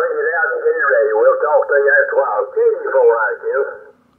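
Single-sideband voice from a 75-meter rag-chew received on a Yaesu FTdx5000 transceiver. It sounds thin and narrow, with no deep bass or crisp treble, because the DSP filtering and the IF shift are set to bring back some of the low end. The transmission breaks off just before the end.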